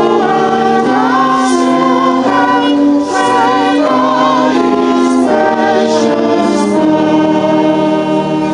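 A group of voices singing a hymn in harmony, with long held chords that shift together every second or so.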